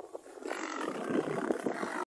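A lion snarling as it pounces on and pins a small cub, starting about half a second in and going on without a break.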